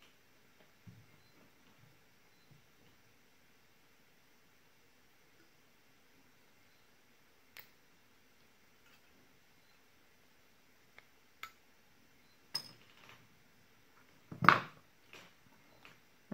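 A small metal hand tool picking and scraping at the leftover nickel strip on the end of an 18650 lithium-ion cell: scattered faint clicks, then one louder sharp click and scrape near the end, followed by a few more small clicks.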